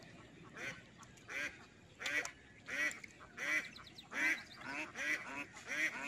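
A duck quacking over and over in an even series, about one quack every 0.7 seconds, starting about half a second in and getting louder over the first couple of seconds.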